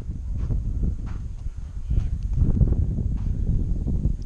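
Low rumble of wind buffeting the camera microphone, rising and falling unevenly, with a few soft knocks.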